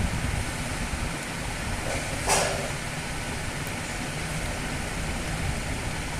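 Steady background noise, heavier in the low end, with one short hiss about two seconds in.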